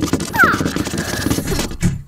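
Cartoon sound effect of a group of characters rushing off: a dense, loud clatter of rapid strokes with a brief falling squeak about half a second in, cutting off suddenly at the end.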